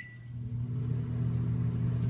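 Microwave oven started from its keypad: a short beep, then from about half a second in the oven runs with a steady low hum.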